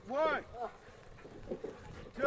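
A loud wordless shout from a person, rising then falling in pitch, in the first half second, followed by a shorter, weaker call. The rest is quieter outdoor background.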